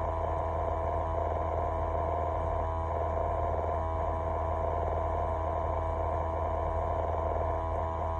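Steady machine hum inside a truck cab: a constant low drone with a few fixed tones over it.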